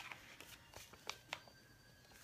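Near silence in a small room, broken by about five faint, sharp clicks and taps from light handling.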